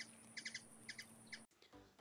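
Faint bird chirps, a few short calls about every half second, cut off suddenly near the end.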